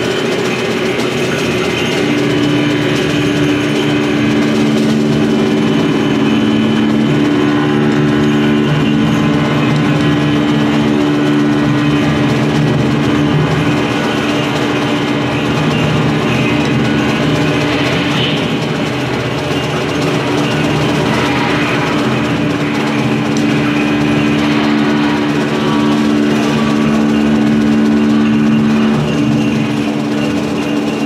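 Live improvised ensemble music with drum kit and horn: a dense, unbroken drone of sustained tones, two low held notes standing out over a wash of higher sound, with no clear beat.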